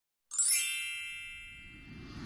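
A bright, bell-like chime struck once, about a third of a second in, its ringing tones slowly fading away.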